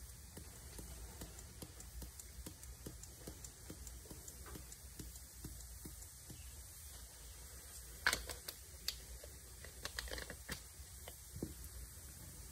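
Fine glitter shaken out of a small jar into a small cup: a faint, quick patter of tiny ticks, with a few louder taps and knocks about eight seconds in and again around ten to eleven seconds, over a faint low hum.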